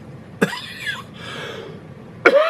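A man coughing: a sudden harsh cough about half a second in, trailing off into a rough, breathy rasp.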